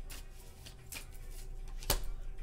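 Tarot cards being handled and drawn from the deck: a few faint flicks and rustles, then one sharp click near the end.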